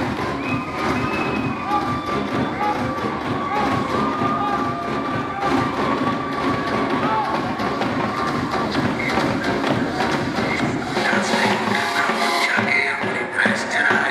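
Dance music playing, with a crowd cheering and clapping along. The deep bass drops away about two seconds before the end.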